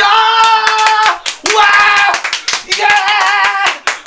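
A man shouting three long, drawn-out "yaaa!" cries in a high voice while clapping his hands quickly and repeatedly.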